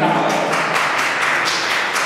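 Audience applause: a dense, steady clatter of many hands clapping that breaks in on the speaker and begins to ease near the end.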